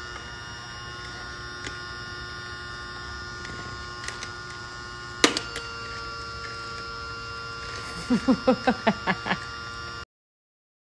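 A toy vacuum cleaner's small electric motor runs with a steady hum. There is one sharp click about five seconds in, and a short burst of laughter near the end.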